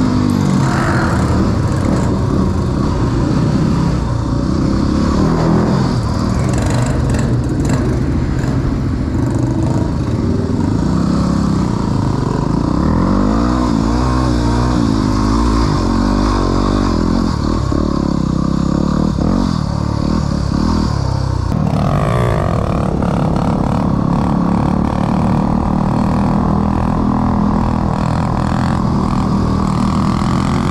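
Small dirt bike engine running as it is ridden, its pitch rising and falling as the throttle is opened and closed.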